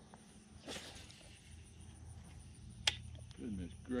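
Faint outdoor ambience with insects chirping, a single sharp click about three seconds in, and a short laugh starting near the end.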